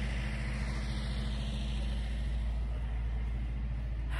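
Ice cream truck engine idling steadily while the truck is parked, its music switched off.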